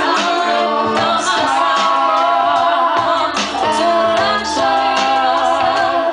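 Live pop performance: two women singing into microphones over a steady held accompaniment.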